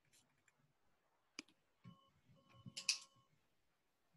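Faint room tone broken by a sharp click about a second and a half in, then a short cluster of clicks and rustle with a faint steady tone under it, loudest near the three-second mark.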